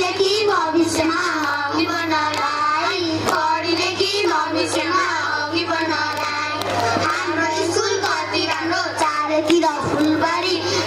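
A group of children singing a song together into a microphone, their voices carried over a PA, with a steady low hum underneath.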